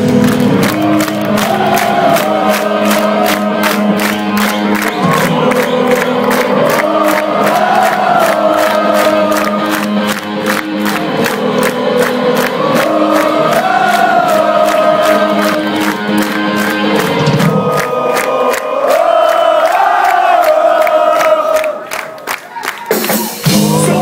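Hardcore punk band playing live, drums keeping a fast steady beat under a repeating sung chorus that the crowd sings along to. The lower band parts drop out about three-quarters of the way through, leaving drums and voices.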